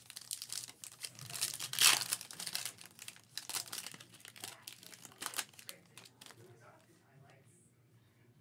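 Foil wrapper of a Panini Select basketball card pack crinkling and tearing as it is ripped open and the cards are pulled out. The crackling is loudest about two seconds in and dies away in the last two seconds.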